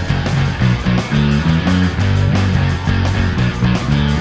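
Rock band instrumental passage: drums and guitar with a Fujigen NCJB-20R electric bass, through a Zoom B2.1u effects unit, playing a line that steps quickly from note to note. The whole track sounds pitched lower than the original recording.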